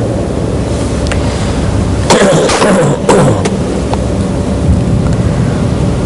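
A pause in a man's spoken lecture, filled by the steady hum and hiss of a noisy recording. About two seconds in comes a brief vocal sound from the speaker, such as a murmur or throat-clearing.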